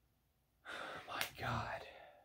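A man's sharp intake of breath, then a low voiced sigh, an impressed reaction to a scent he has just smelled.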